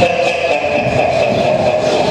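Film soundtrack playing through loudspeakers in a large room: a loud, steady, noisy sound with a held tone running through it, mechanical rather than speech or music.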